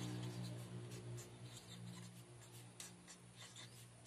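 Fine-tip marker pen writing on paper: a run of short, quick scratchy strokes. Under it is a faint low hum that fades away toward the end.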